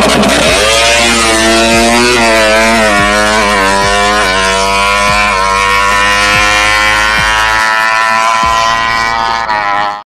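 Drag-tuned Suzuki Satria FU motorcycle launching hard and accelerating away through the gears: the revs climb and drop back sharply at each of several quick upshifts in the first five seconds, then it holds a long, high-revving pull.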